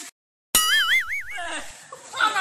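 A cartoon 'boing' sound effect marking a comic fall: after a moment of dead silence it starts suddenly, a springy tone wobbling up and down in pitch for about a second.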